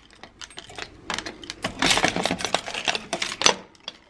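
Keys jangling on a keyring and clicking in the lock of a metal post office box, a quick run of clinks and rattles, as the small box door is unlocked and swung open.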